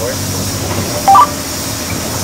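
Short two-tone electronic beep from the bus's two-way radio about a second in, a brief low note stepping up to a higher one, over the steady low hum of the transit bus interior.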